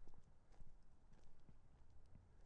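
Footsteps crunching on the gravel ballast of a railway track at a walking pace, a soft step about every half second.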